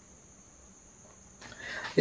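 A quiet pause: low room tone under a faint, steady high-pitched tone, then a soft breath in near the end, just before the man speaks again.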